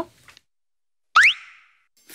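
A short cartoon-style 'bloop' sound effect about a second in: one quick upward-sweeping pitch that dies away within a second, after a moment of dead silence.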